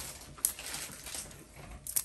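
Plastic suction tubing and its connector being handled: a sharp click about half a second in and another near the end, with faint rustling between.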